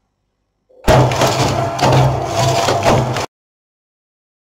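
Brother electronic knitting machine carriage pushed across the needle bed, knitting a row: a loud rolling rattle with a steady low hum, lasting about two and a half seconds and stopping abruptly.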